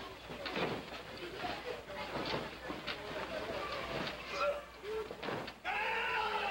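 Scattered crowd voices and shouts in a hall, broken by several dull thuds of wrestlers striking and stepping on the ring canvas.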